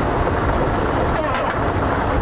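Lottery draw machine running with a steady rushing noise while the numbered balls are mixed, before the first ball is drawn.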